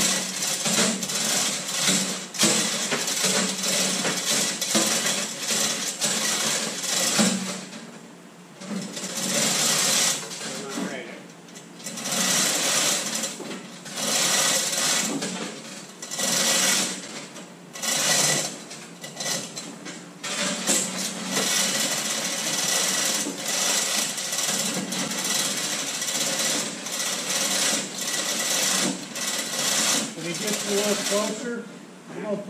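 Rapid, dense mechanical rattling and clatter, coming in stretches of a few seconds with several short breaks in the middle, while the heavy lathe on its skid is being worked along the trailer.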